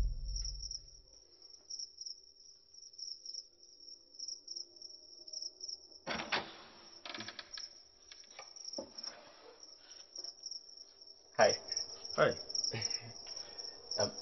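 Crickets chirping steadily in a fast, pulsing high chirp. About six seconds in, a wooden door's latch clatters as the door is opened, and a few more clicks and thuds follow near the end.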